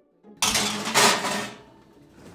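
Metal baking sheet sliding onto an oven's wire rack: a sudden metallic scrape about half a second in, loudest around a second, then fading.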